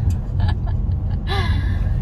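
Women laughing and gasping, with one loud breathy laugh-gasp about a second and a half in, over the steady low rumble of the car driving, heard inside the cabin.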